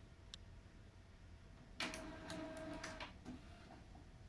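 Epson P50 inkjet printer starting a CD print: its feed motor runs for about a second, with a steady whir and a few clicks, as it draws the loaded CD tray in. A faint click comes just before.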